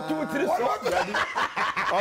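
Several people in a studio laughing and chuckling over talk, in short repeated bursts.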